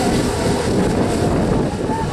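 Engines of a pack of racing karts buzzing, their pitch gliding up and down as they lap the dirt oval, with wind buffeting the microphone.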